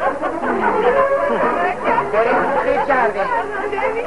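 Several voices talking at once in an overlapping babble of chatter, with no single speaker standing out.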